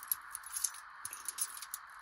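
Faint scattered metallic clicks and ticks from a bunch of keys being handled, over a steady background hiss.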